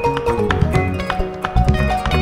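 Malian band music: plucked ngoni and struck balafon notes over bass and hand percussion, in a steady driving rhythm.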